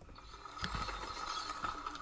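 Old wooden windmill machinery creaking and clicking, a steady high creak with a few sharp clicks.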